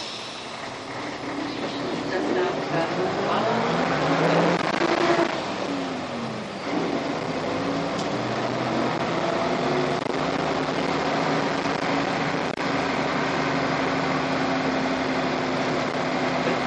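Diesel engine of a Karosa B 732 city bus heard from inside the bus, pulling hard uphill. Its pitch rises, drops at a gear change about five seconds in, rises again, and then runs steady under load for the rest of the time.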